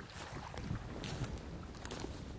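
Wind buffeting the microphone, with a few crackling footsteps of rubber boots on dry reed stalks in the second half.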